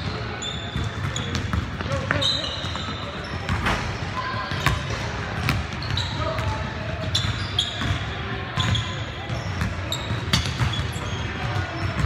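Indoor basketball game in a large, echoing gym: the ball bouncing and thudding, sneakers squeaking in short high chirps on the hardwood court, and players' voices calling out.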